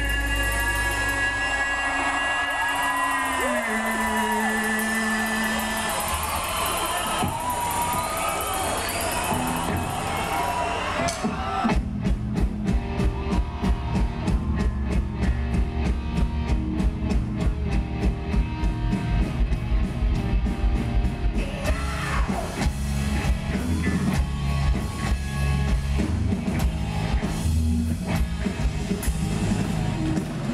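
Live rock band playing through a festival PA: held, sliding notes for the first part, then about eleven seconds in the drums and bass come in with a fast, driving beat.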